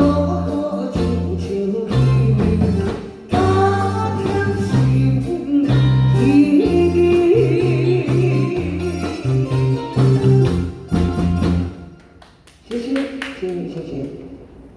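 A woman singing into a microphone with a live band of drum kit, bass guitar and keyboard playing behind her. The music falls away about twelve seconds in, with a short last sound just before the end.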